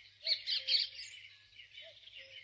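Birds chirping and twittering: a quick run of short high calls, busiest in the first second, then thinner, with a faint steady hum beneath.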